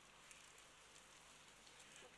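Near silence: faint outdoor ambience, a low hiss with light fine crackling.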